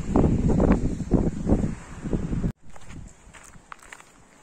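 Wind buffeting the microphone in gusts, which cuts off abruptly about two and a half seconds in. After that, quieter footsteps on a dirt path.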